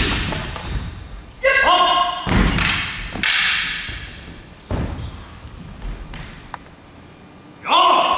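Bare feet stamping and thudding on a wooden gym floor during a stage-combat sword drill, echoing in a large hall. Short, loud shouts from the fighters come about a second and a half in and again near the end.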